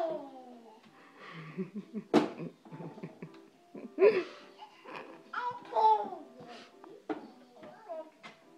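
A toddler babbling and making short squealing calls, with a woman laughing briefly near the start. A single sharp knock sounds about two seconds in, as a plastic dressing bottle is handled on the fridge door shelf.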